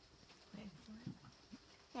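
Near silence with a few faint, short hums of a young girl's voice.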